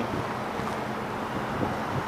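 Steady street background: low hum of traffic with wind rumbling on the microphone.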